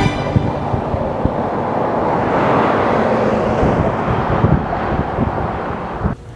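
Outdoor road noise on asphalt: a steady rushing that swells around the middle and eases off, with wind on the microphone and a few low knocks.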